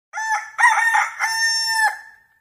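A rooster crowing once, a high call of about two seconds in three joined parts, the last held longest and dropping off at the end.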